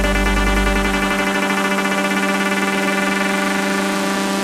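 Tech house music at a breakdown: a sustained synthesizer chord with the drum beat dropped out. A deep bass note fades away in the first second and a half.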